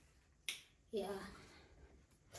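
A single short, sharp click about half a second in, followed by a woman briefly saying "yeah".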